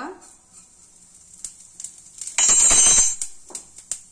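Cumin seeds dropped into hot oil in a stainless-steel kadhai, giving scattered small crackles. About two and a half seconds in there is a loud, brief metallic clatter of the spoon against the pan.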